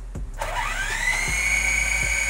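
SG701 quadcopter's four motors and propellers spinning up from rest to idle speed after the motors are started from the transmitter: a whine that begins about half a second in, rises quickly in pitch and settles into a steady high whine.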